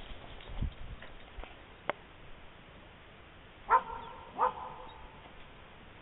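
A dog barking twice, two short barks a little under a second apart just past the middle.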